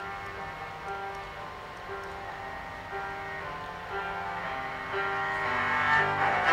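Cello with piano accompaniment playing a classical piece, with a mid-range note recurring about once a second. The music grows louder toward the end.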